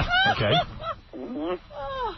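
A very high-pitched man's voice says "okay", followed by two shorter high vocal sounds, one lower in the middle and one rising in pitch near the end.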